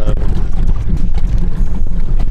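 Wind rumbling on the microphone, with a few faint knocks scattered through it.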